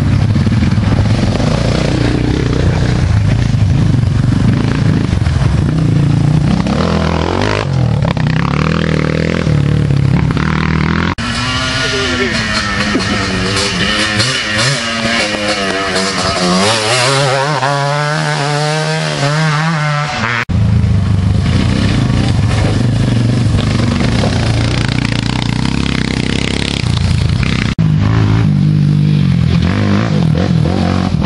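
Quad (ATV) engines running and revving up and down as the riders approach and pass close by. The engine sound changes abruptly three times, at about 11, 20 and 28 seconds in.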